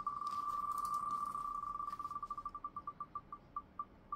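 Wheelofnames.com spinning-wheel tick sound played through a laptop's speakers. Rapid ticks blur together at first, then slow and spread out as the wheel winds down.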